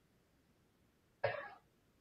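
Near silence, then a single short cough a little over a second in.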